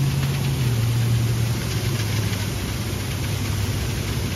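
Fire hose flowing from an inch-and-an-eighth nozzle tip at 80 psi standpipe pressure: a steady rush of water, with a low steady engine hum underneath that dips slightly in pitch about a second in.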